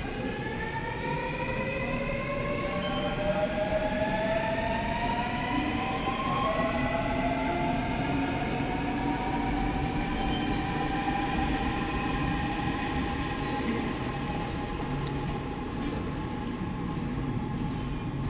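Daewoo-built Seoul Line 8 train with Alstom GTO VVVF inverter drive pulling away: the inverter and traction motors whine in several tones that climb in pitch, jumping up a step a few times as the train gathers speed, over a steady low rumble of the running train.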